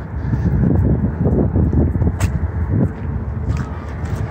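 Wind buffeting the camera microphone in a low, uneven rumble, with a few faint footsteps on wooden steps.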